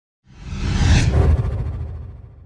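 Intro logo sound effect: a swelling whoosh that peaks and cuts off about a second in, over a low rumbling swell that fades away.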